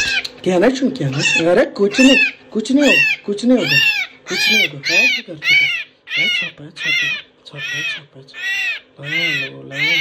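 Common myna calling over and over while held in the hand. Each call rises and then falls in pitch, and the calls come about twice a second.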